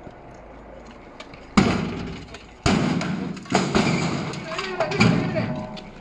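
A house door being forced: four heavy thuds about a second apart, with men shouting between them.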